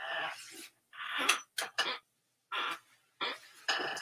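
Short breathy exhalations of effort, about six in a row, mixed with the rustle of clothes on hangers as a shirt is pulled off a rack with a sore shoulder.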